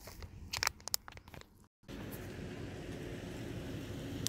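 A few irregular crunching footsteps while walking. After a short gap, a steady low outdoor rush with a faint hum takes over.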